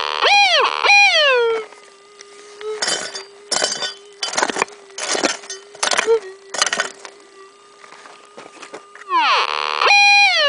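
Minelab metal detector's steady threshold hum. It breaks into loud signal tones that rise and fall as the coil passes over a buried target: twice at the start and once near the end, the target still in the ground. In between, a pick strikes stony ground six times, about one and a half strikes a second.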